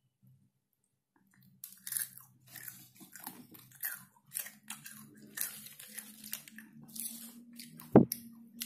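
Close-miked chewing of McDonald's crispy fried chicken (Ayam Goreng McD), crunching in quick bites about two or three times a second after a quiet first second and a half. One sharp, loud click comes at the very end.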